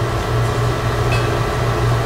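Steady low hum with faint room noise, typical of a meeting room's ventilation or equipment.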